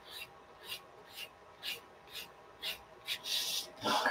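Soft-lead pencil scratching on drawing paper in quick short curved strokes, about two a second, with a slightly longer stroke near the end.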